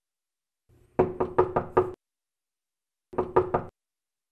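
Knocking on a wooden door: a run of about five quick knocks, a pause of about a second, then about four more.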